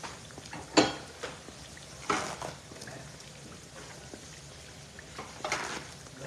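Homemade beef patties frying in a pan of hot oil, a steady sizzle, broken by a few sharp handling noises: a loud knock about a second in, and shorter ones near two seconds and near the end.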